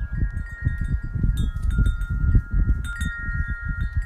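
Wind chimes ringing in the wind: several long, overlapping high tones, with fresh strikes a little over a second in and again near three seconds. Underneath is a loud, gusting low rumble of wind on the microphone.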